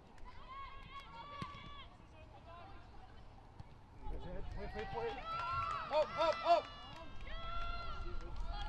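Footballers shouting calls to each other across an outdoor pitch, louder from about halfway through, with the loudest shouts about six seconds in.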